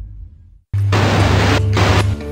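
Title-card soundtrack: a low booming rumble dies away into a moment of silence. About three-quarters of a second in, a loud burst of noisy sound effect cuts in suddenly over a deep steady bass tone.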